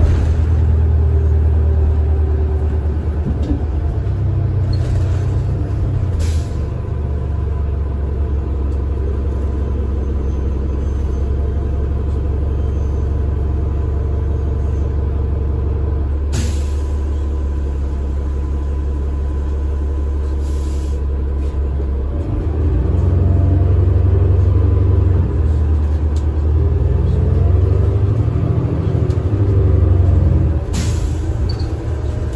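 Cummins ISL9 diesel engine of a New Flyer Xcelsior XD40 city bus, heard from on board, droning steadily at low pitch. About two-thirds of the way in the engine grows louder and higher as it revs up. A few short sharp sounds stand out over the drone.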